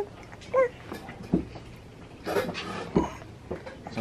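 A baby gives a short, high-pitched squeal that rises and falls in pitch about half a second in, with quieter mouth noises later. There are two light knocks on the plastic high-chair tray, one in the middle and one near three seconds.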